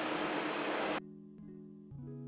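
A spoon folding batter in a stainless steel mixing bowl for about a second, then the kitchen sound cuts off suddenly and background music of held, soft notes plays, changing notes a couple of times.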